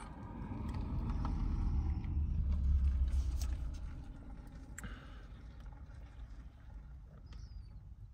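A vehicle's low rumble swelling to its loudest about three seconds in, then fading away.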